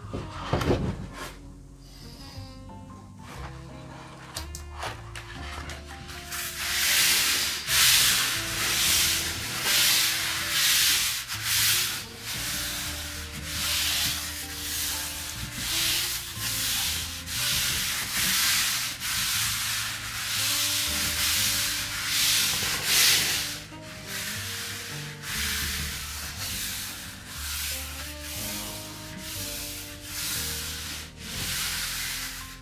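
Bare hands rubbing a sheet of paper laid over a Gelli plate, burnishing it down to pull a print. The strokes come in a steady rhythm of about one a second, starting about six seconds in.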